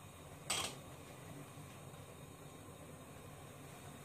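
Faint steady hiss with one short, sharp rustle about half a second in.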